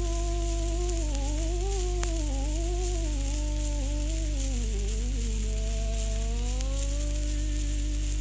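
Music played from an old shellac 78 record of a Spanish song: a single wordless melodic line slides smoothly up and down, over a steady low hum and the record's crackling surface hiss.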